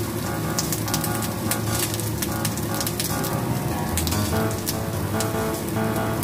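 Egg and onion rings frying in a pan, a steady sizzle with many small pops, under background music.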